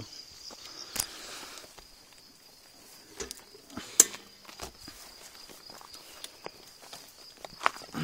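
Bicycle rolling downhill over a rough gravel track, rattling, with scattered sharp clicks and knocks, over a steady high chirring of crickets.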